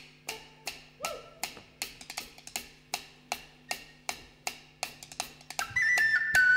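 Drumsticks giving a steady run of sharp wooden clicks, close to three a second, counting in the next song. A whistle melody comes in loudly near the end.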